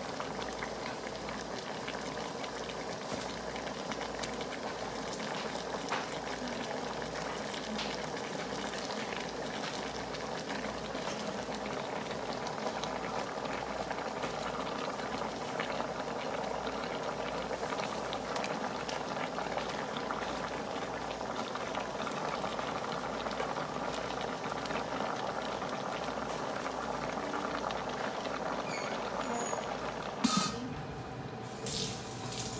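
Pochero stew of beef and vegetables simmering in a stone-coated wok, bubbling and crackling steadily.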